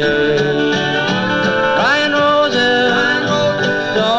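A 1959 country record playing from a 45 rpm single: a small country band, with a lead line that glides up in pitch about two seconds in.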